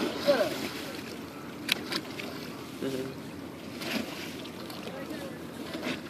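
Steady outdoor wind and river-water noise, with a brief click about 1.7 seconds in.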